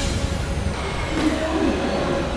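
Road noise from a moving car in town traffic: a steady low engine-and-tyre rumble with a general street hum.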